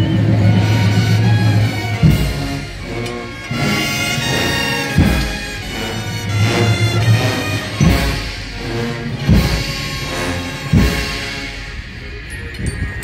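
Procession brass band playing a slow funeral march, with low brass holding long notes and a deep drum struck every two to three seconds.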